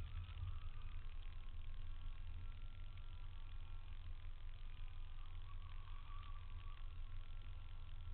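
Nissan Silvia S13 engine idling while the car creeps forward and waits in the staging line, a low, even rumble.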